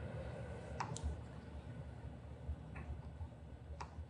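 A few separate, sharp clicks from a laptop being worked during live coding, over a low steady room hum.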